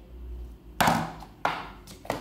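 Beeswax candle set down on a tabletop: a sudden knock about a second in that tails off, then a lighter second knock.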